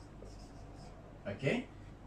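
Marker pen writing on a whiteboard, a few faint short strokes during the first second.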